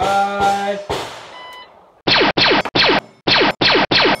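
Carbine shots with steel plates ringing in the first second, the ring fading away. About two seconds in come six quick scratchy bursts in a row, an added sound effect.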